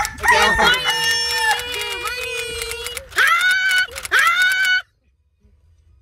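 Young women's voices squealing and crying out in long, high-pitched held notes, several voices overlapping, ending with two rising cries that cut off suddenly near the end.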